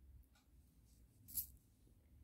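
Near silence, with a brief faint rustle about a second and a half in: beading thread being drawn through seed beads.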